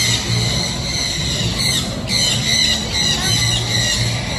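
Parrot squawking and screeching in two long stretches with a short break a little before halfway.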